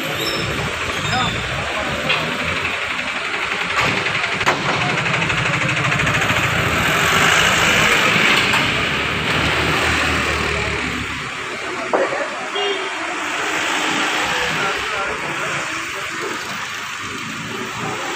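Street traffic with vehicle engines running: a low engine rumble drops away about eleven seconds in, with a few sharp knocks along the way.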